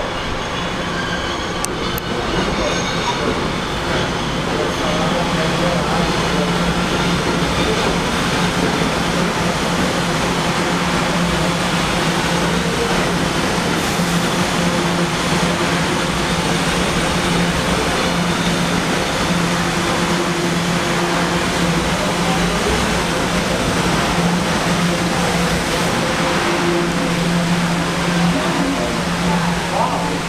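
Kawasaki R211T subway train coming into the station and running along the platform: a steady rumble of wheels on rail with a steady low hum, growing louder over the first few seconds as the cars draw alongside.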